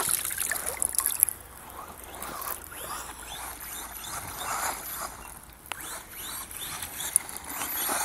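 Water splashing and dripping as a handheld RC radio transmitter is pulled out of a cooler full of water. Then the RC car's motor is heard faintly, revving in short rising whines as the car is driven.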